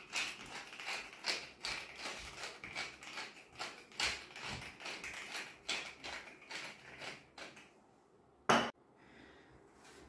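Wooden pepper mill grinding black peppercorns: a run of short rasping grinds about three a second, stopping after about seven and a half seconds. A single knock follows about a second later.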